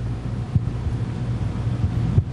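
Room tone picked up by the podium microphones: a steady low hum under a wash of noise, with a soft low thump about half a second in.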